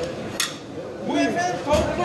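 Mostly speech with restaurant chatter behind it, and a single short clink of tableware about half a second in.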